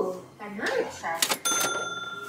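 Cash-register 'ka-ching' sound effect: a quick clack, then a bright bell ding about a second and a half in that rings on and slowly fades. Before it comes a short vocal sound.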